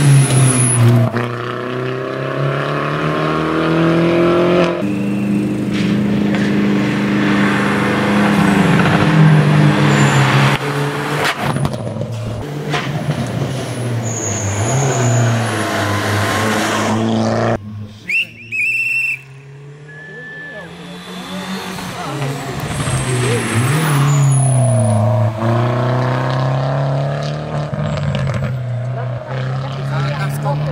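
Mini Cooper S rally car's turbocharged four-cylinder engine driven hard on a stage, its note rising and falling again and again as it accelerates, shifts and brakes for corners. It is loudest as the car passes close by past the middle, and briefly drops away about 18 seconds in before climbing again.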